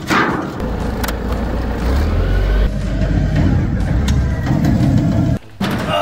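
Forklift engine running steadily with a low rumble, which stops abruptly about five seconds in.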